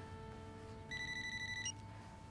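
A telephone ringing: one electronic trilling ring just under a second long, near the middle, over soft sustained background music.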